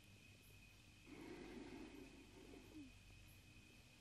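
Near silence: room tone, with a faint low-pitched sound lasting nearly two seconds that starts about a second in.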